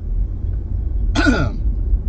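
Steady low rumble of a moving car heard from inside the cabin, with one short throat-clearing cough from the driver about a second in, falling in pitch.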